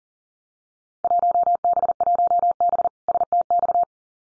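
Morse code at 40 words per minute: a single pure tone of about 700 Hz keyed rapidly in dots and dashes, starting about a second in and stopping just before the end. It sends the Field Day exchange 1B South Texas (1B STX), the contest class and ARRL section.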